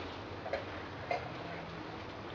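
Quiet room tone with two faint light ticks, one about half a second in and one just after a second.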